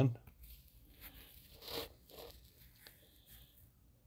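Faint rustling and light scraping of fingers handling small plastic model-kit parts as the steering column is fitted into the frame, with one slightly louder scrape a little under two seconds in.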